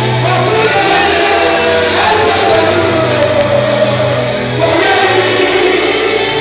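Live gospel music: a group of singers at microphones with an amplified band, held bass notes underneath.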